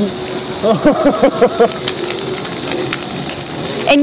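A large wood bonfire crackling and popping, with voices in the background about a second in and a steady low hum underneath.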